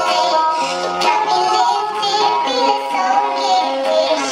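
Music with a singing voice, steady and loud.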